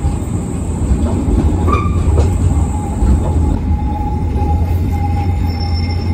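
City tram passing close by on street rails: a steady low rumble of wheels on the track, with a thin steady squeal that sets in about a second in and holds.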